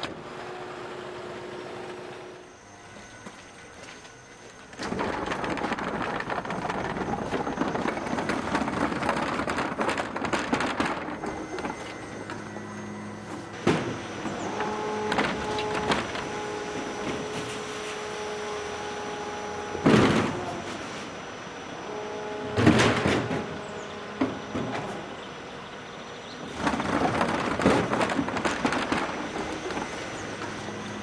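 Refuse truck's bin lifter working: motorised whirring as wheelie bins are lifted and tipped, with a steady motor whine through the middle and two loud bangs about two-thirds of the way through as a bin knocks against the lifter.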